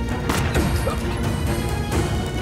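Tense drama soundtrack music, with one sudden crashing hit about a third of a second in that trails off in falling tones.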